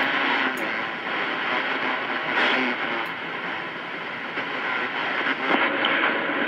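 Steady static hiss from a CB radio receiver's speaker between transmissions, on an open channel with no one talking.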